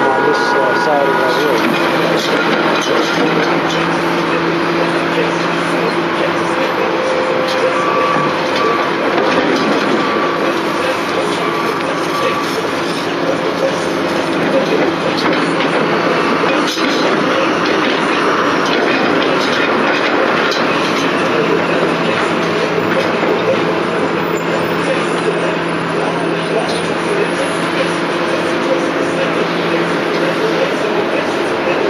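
A long freight train of autorack cars rolling past, with a continuous rumble and rattle of wheels on rail. A few faint held tones come and go over it.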